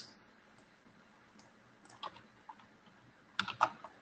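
A few faint computer keyboard keystrokes: isolated clicks about two seconds in, then a quick cluster of them near the end.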